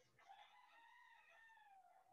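A faint, single drawn-out animal call that rises slightly and then falls in pitch, lasting most of two seconds.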